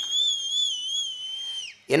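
A long, high whistle, held steady with a slight waver, that drops away sharply near the end.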